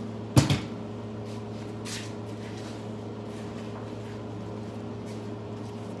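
A single sharp knock about half a second in, with a fainter click about two seconds in, over a steady low hum.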